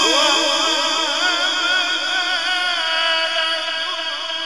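A male Quran reciter's voice in melodic mujawwad recitation, holding one long ornamented note that wavers rapidly, about four ripples a second, through a microphone.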